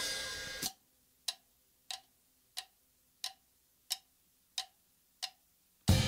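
Band music fading out, then a run of about eight sharp single ticks, evenly spaced at roughly one and a half a second, before the music comes back in near the end.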